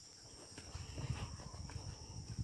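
Steady chirring of insects, with irregular low thumps and rustling starting about a second in from footsteps through grass and a jostled handheld phone.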